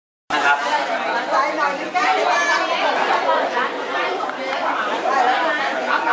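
Many people talking at once: overlapping crowd chatter at a steady level, after a very brief dropout to silence at the start.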